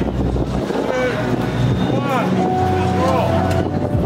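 Ambient electronic soundscape from a roaming light sculpture: held synthetic tones with short swooping notes that rise and fall, over a low drone that drops away about half a second in.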